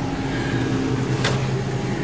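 Steady hum of a car in motion, heard from inside the cabin, with a single sharp click a little past halfway.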